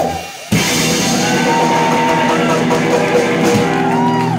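Live rock and roll band with a hollow-body electric guitar, upright bass and drum kit playing. The band drops out briefly just after the start, then comes back in with long held notes over the drums.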